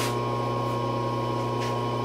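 Steady electrical hum with a high whine from the Supermax CNC knee mill while it is switched on, with a faint click about one and a half seconds in.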